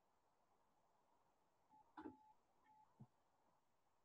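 Near silence, with a few faint short beeps and a couple of faint clicks around two to three seconds in.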